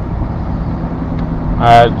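A steady low hum under a noisy hiss fills a pause in a man's speech. He starts speaking again near the end.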